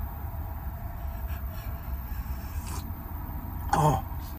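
Faint sips of hot coffee from a mug over a low, steady rumble, then a short voiced exhale near the end.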